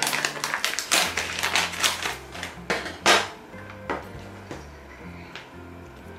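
Crinkling and crackling of a clear plastic food tray being handled, dense for about three seconds and then only a few scattered clicks, over background music with a bass line.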